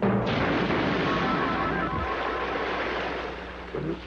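Cartoon explosion and water-splash sound effect: a sudden loud burst of noise that carries on and fades out near the end, with music underneath.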